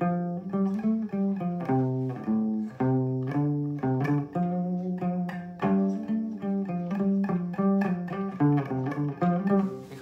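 Đàn nguyệt (Vietnamese two-string moon lute) fitted with an EQ pickup set, plucked in a continuous melody of short notes, several a second. Its tone is warm and earthy, the character the fitted set gives it.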